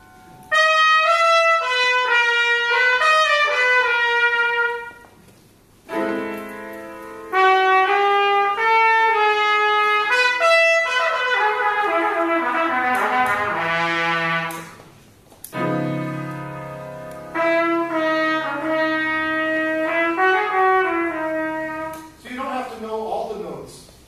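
Trumpet improvising melodic phrases by ear over sustained piano chords, with brief pauses between the phrases.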